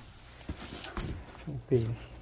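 A cardboard box being handled, with a couple of light knocks, then a short vocal sound that bends in pitch near the end.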